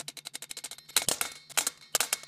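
Small hammer setting solid brass rivets through a leather strip into a steel helmet over a steel stake. First a quick, even run of light taps, then about a second in, several harder metal strikes.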